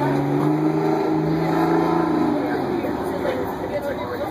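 Diesel engine of a yellow Crown Supercoach Series II school bus pulling away, its pitch stepping up about a second in, then fading as the bus drives off.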